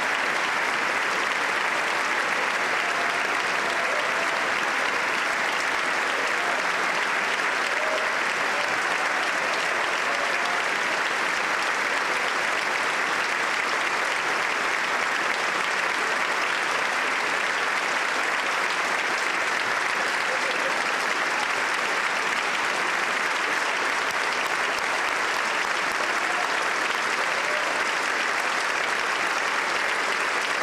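Sustained standing ovation: a large audience applauding steadily in a big hall, without a break.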